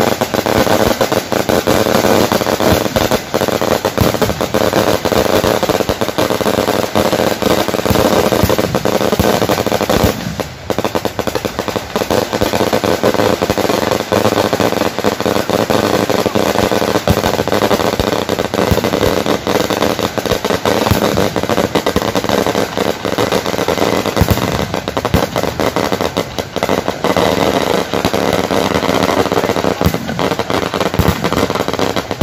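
A long string of firecrackers hanging beneath a hot-air balloon bursting in a rapid, continuous crackle, with a brief lull about ten seconds in. A steady drone runs underneath.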